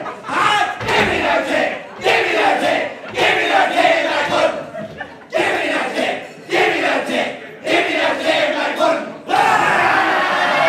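A group of men shouting a haka-style chant in unison, in short barked phrases about a second long, one after another.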